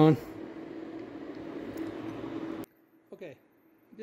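A steady hum and hiss with one low, even tone, like a fan or other small machine running. About two and a half seconds in it drops off abruptly to near silence.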